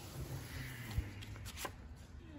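A hardcover book being handled and opened, its pages and paper cover rustling faintly, with a couple of light taps.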